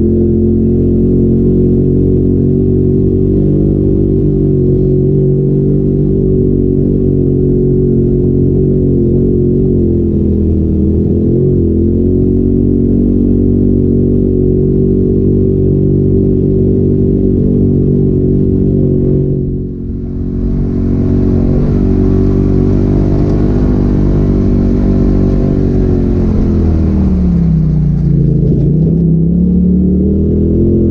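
Polaris RZR side-by-side's engine running at steady revs while under way on a dirt trail, heard from inside the open cab. About two-thirds through the revs drop briefly, and a rushing hiss joins for several seconds. Near the end the revs fall and then climb again.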